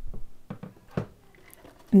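Packaging being handled and set down on a tabletop, a plastic-sleeved die-cutting platform pack and a styrofoam block: a few short light knocks in the first second, then faint rustling.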